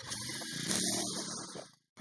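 Recoil pull-starter of a home-built go-kart's small engine being yanked, a rasping whirr that fades out just before the end.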